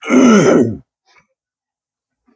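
A man clearing his throat once: a short, harsh rasp under a second long, falling in pitch.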